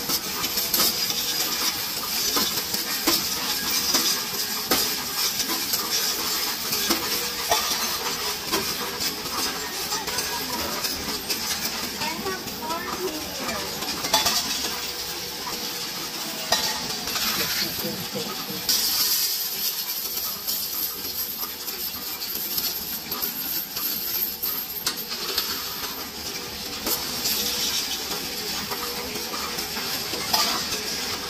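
Loose coins, mostly pennies, clinking and clattering continuously as they are pushed and poured into a Coinstar coin-counting machine's tray and fed through it.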